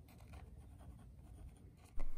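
Mechanical pencil lead scratching faintly on sketchbook paper in short strokes, shading the centre of a drawn flower.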